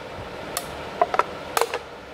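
Dented wall of an empty, lidless aluminium beer can clicking and popping as the dents are pushed back out by hand: several sharp clicks in small clusters. A steady machinery noise from brewery cleaning runs behind.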